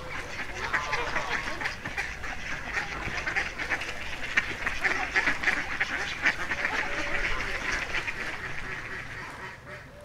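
Waterfowl calling: a dense chorus of many short, overlapping calls that eases off near the end.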